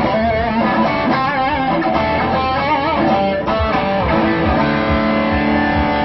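Electric guitar played through an ODM-5 overdrive pedal on its highest-gain setting, giving a big crunchy overdriven tone: single-note lines with vibrato, then long held notes that sustain.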